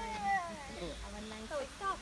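A young child's whining voice: one long drawn-out call that rises and falls in pitch, then a few short high cries near the end.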